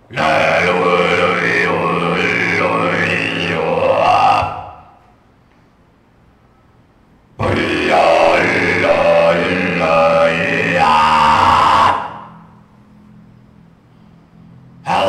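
Experimental noise collage of dense, layered voice-like sounds with sliding pitches, coming in abrupt blocks. A block starts suddenly, drops away after about four and a half seconds, then cuts back in about three seconds later and stops again about two seconds before the end.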